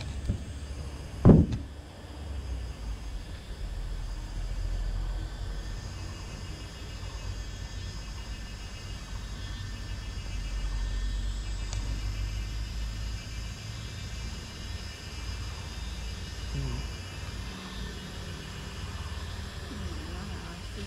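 A sharp knock about a second in, as the handheld camera is set down on the car roof, then a steady low rumble.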